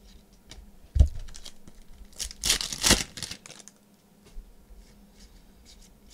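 A stack of trading cards handled and flipped through by hand: scattered small clicks of cards, a sharp knock about a second in, and a louder rustle of cards sliding over one another a little before the middle.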